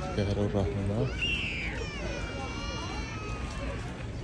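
Passers-by talking outdoors: a voice speaking briefly, then a high sliding call about a second in, followed by a longer high, wavering sound.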